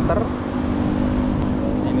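Street traffic: a motor vehicle engine running steadily, with a low rumble, and a short click about one and a half seconds in.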